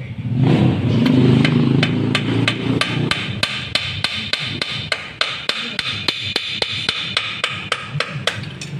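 Hammer blows on metal, a steady run of evenly spaced strikes about four a second, with a louder low rumble under them for the first two seconds or so.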